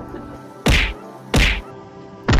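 Cardboard box slammed down onto dirt ground: two sharp whacks, the second about 0.7 s after the first.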